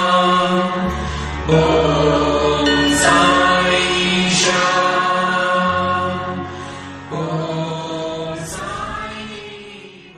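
Devotional chant music: voices chanting a mantra over a steady low drone, fading out near the end.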